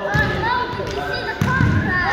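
A football kicked on artificial turf, with a thud of the kick just after the start and another ball thud about a second and a half in. Children's voices run underneath throughout.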